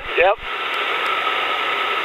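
Steady noise of the weight-shift trike's engine and the wind, heard through the headset intercom, so it sounds thin and cut off in the highs, with a faint steady whine running through it. A short spoken "yep" opens it.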